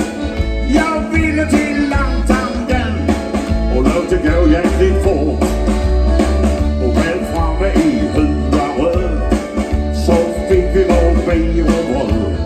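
Live band music with a steady beat: drum kit, electric guitar and bass, with a man singing into a microphone over it.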